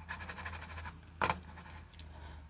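Fast, even ticking of a computer mouse scroll wheel for about the first second, then a single short, louder noise a little past a second in, over a low steady hum.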